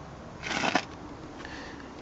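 A short rustle of handheld handling, about half a second in, as the camera is swung down from the door towards the seat, over a faint steady background hum.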